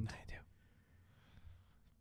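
A man says one short word, then quiet whispered speech under the breath.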